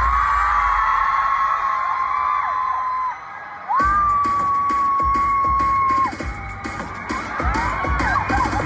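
Live concert: an electronic dance track over the PA with fans screaming, long held shrieks over shorter whoops. The sound drops away for about half a second around three seconds in, then the beat comes back in under another long scream.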